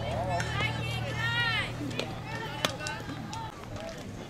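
Players and spectators shouting and calling out at a softball game, with several overlapping shouted calls, one long one about halfway through. A low steady hum sits under them and stops shortly before the end, and a few sharp clicks cut through.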